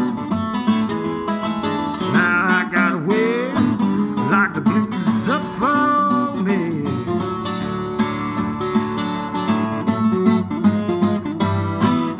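Twelve-string acoustic guitar played fingerstyle in a country blues instrumental break, with notes gliding and bending in pitch between about two and seven seconds in.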